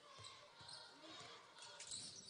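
Faint court sound of live basketball play: a basketball being dribbled on a hardwood floor.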